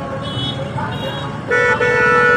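A vehicle horn sounds twice near the end, a short toot and then a longer one, over the steady noise of slow street traffic and voices.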